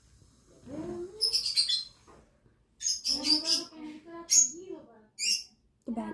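A child's voice making wordless vocal noises, squeaks and gliding sounds in several short bursts, mixed with brief sharp hissing bursts.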